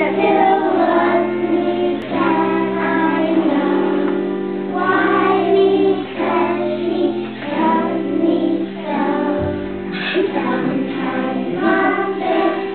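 A group of young children singing a song together over instrumental accompaniment, its held chords changing every second or two.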